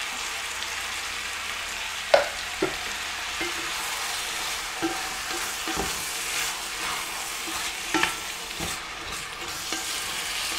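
Beef, onion and crushed tomato sizzling in an enamelled pot as it is stirred with a wooden spatula. A few sharp knocks of the utensil against the pot break the steady hiss, the loudest about two seconds in.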